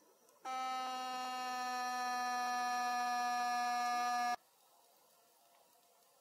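A steady buzzing, horn-like tone held on one pitch. It starts suddenly about half a second in, lasts about four seconds and cuts off just as suddenly.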